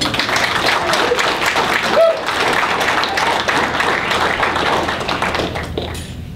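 An audience applauding, with a brief shout about two seconds in; the clapping thins out toward the end.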